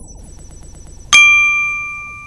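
Logo sound effect for a news channel's end card: a fast, faint electronic ticking, then about a second in a sudden bright ding that rings on and fades slowly.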